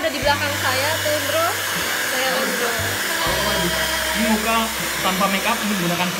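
Hand-held hair dryer blowing steadily.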